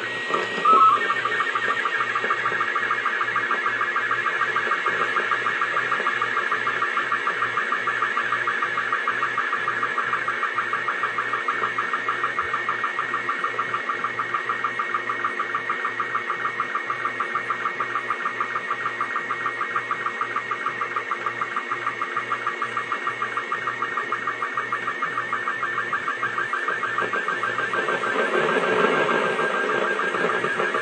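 Slow-scan TV (SSTV) picture signal from the SEEDS (CO-66) cubesat, received on 437.485 MHz FM: a warbling audio tone that changes pitch constantly as it carries the image, cut by a fast, even beat of line-sync pulses, over receiver hiss. Near the end, a brief swell of lower noise rises under it.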